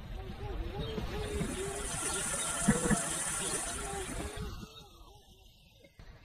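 A person's voice, fading in at the start and fading out shortly before the end, with a steady high hiss under it.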